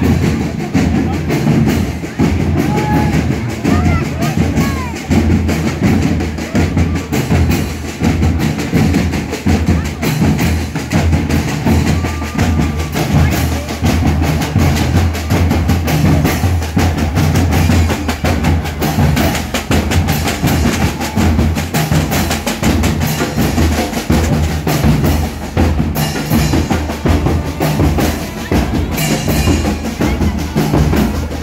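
Marching fanfare band's drum line playing a steady beat, with deep bass drums and rattling snare drums, and voices mixed in.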